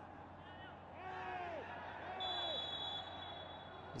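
Faint shouts of players on the pitch with no crowd noise behind them: two drawn-out calls about a second apart, then a short, high, steady referee's whistle lasting under a second.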